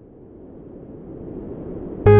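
A low, even rushing noise that swells steadily louder: a riser building up into the start of the music.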